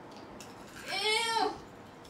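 A girl's single high-pitched squeal about a second in, lasting under a second, rising then falling in pitch.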